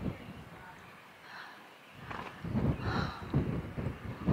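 Low, gusty rumble of wind on the microphone, rising about halfway through after a nearly quiet start.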